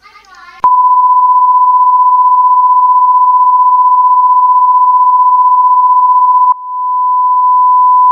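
Broadcast line-up tone: a single pure steady beep of the kind that goes with colour bars when a TV station is off the air. It starts abruptly under a second in, cuts with a click about six and a half seconds in, and comes back quieter, swelling again.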